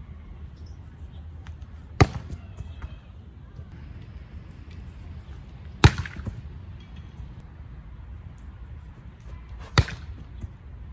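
Three volleyball spikes, each a sharp slap of a hand on a ball held up on a Tandem spike trainer, about four seconds apart. The middle hit is the loudest. A steady low rumble runs underneath.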